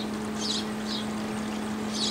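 A steady, low-pitched mechanical hum, with a few faint high chirps around the middle.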